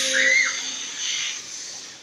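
Children making a hissing whoosh with their mouths to imitate jet turbines speeding up. The hiss fades away over the second half, and there is a brief high squeal from one child near the start.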